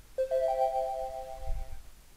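NinjaTrader's connection alert chime, signalling that the platform has connected to the Market Replay feed. Three rising electronic tones enter one after another and ring together as a chord for about a second and a half. A low thump comes near the end.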